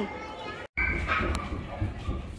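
The sound drops out completely for a moment about a third of the way in. Then comes a low rumble of handling noise from a phone carried by someone walking, with faint children's voices.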